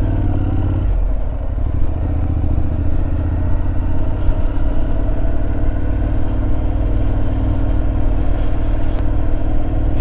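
Honda NC750X parallel-twin motorcycle engine running while riding, with wind and road noise. Its note climbs, drops about a second in, then climbs slowly again as the bike gathers speed.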